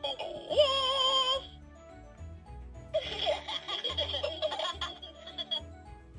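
Electronic sound clips from a Hey Duggee Smart Tablet toy as its buttons are pressed: a wavering held sung note about half a second in, then a burst of recorded giggling from about three seconds in, over background music with a steady bass line.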